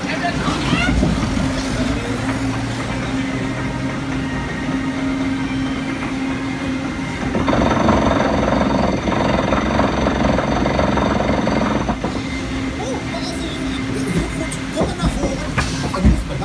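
Water-ride boat being carried up a conveyor-belt lift hill, with steady mechanical running and rattling. A louder hum with high steady tones joins for about four seconds midway.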